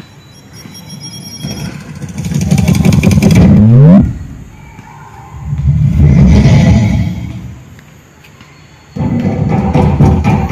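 Motor vehicle engines on a nearby road. One grows louder and revs up with a rising pitch until it cuts off sharply about four seconds in. A second vehicle swells and fades away, and a louder sound starts abruptly about a second before the end.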